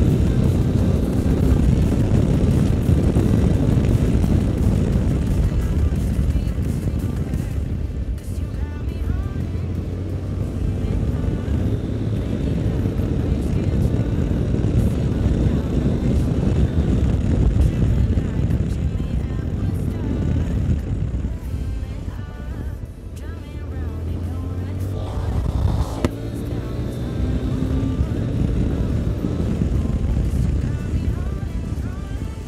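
Yamaha Ténéré 250 single-cylinder engine running as the motorcycle rides along a dirt road, with heavy wind rumble on the microphone. The engine note climbs near the end as it accelerates.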